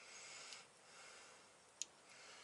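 Near silence: faint breath noise, then one small sharp click near the end as a digital vernier caliper is handled.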